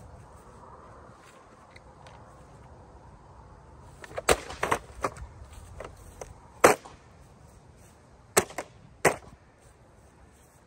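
Kicks striking a plastic Bissell vacuum cleaner, sharp knocks of hard plastic. A quick cluster comes about four seconds in, the loudest blow a little later, and two more blows near the end.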